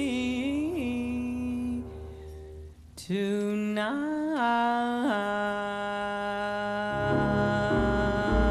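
A woman's wordless vocal, long held notes that slide up and down between pitches, with a short break about three seconds in. Low bass and piano notes come in under the voice near the end.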